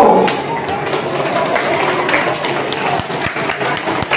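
Audience clapping steadily, with a murmur of voices underneath.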